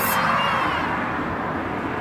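A car passing on the road, its steady tyre and engine noise slowly fading as it goes by.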